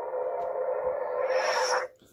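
The Guardian v1 lightsaber's LGT smooth-swing sound board playing the blade hum through the hilt's speaker, a steady electric drone. Near the end it swells into the retraction sound as the red blade shuts off, then cuts out suddenly.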